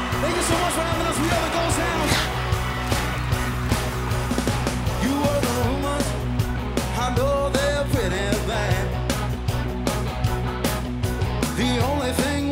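Blues-rock band playing a song: drums, bass and electric guitars with a male lead vocal.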